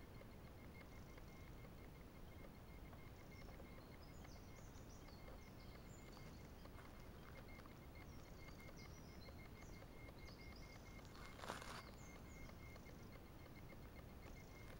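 Near silence with faint, high bird chirps scattered through the first two-thirds, and one brief louder noise about eleven and a half seconds in.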